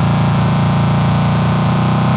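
A held, buzzing distorted synth note in a hardcore electronic track, steady and without a beat.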